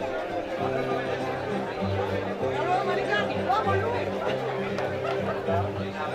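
Crowd chatter from many people, over music with a bass line of held low notes that change every half second or so.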